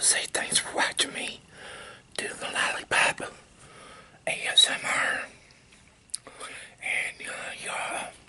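Close-miked wet mouth sounds of chewing and sucking, irregular bursts with sharp lip-smack clicks.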